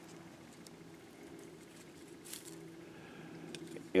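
Quiet, with a faint steady hum and one brief soft rustle of dry pine needles about two seconds in, then a few light ticks as a stick is handled.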